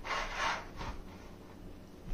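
White plastic container lid being slid and rubbed across the floor by hand: a faint, brief scrape in the first second.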